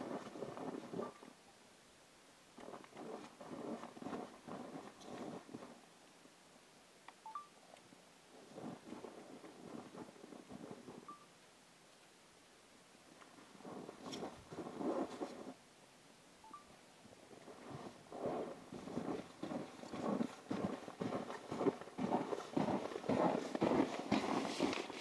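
Footsteps crunching in snow, coming in several irregular runs of a few seconds each, separated by near-quiet pauses.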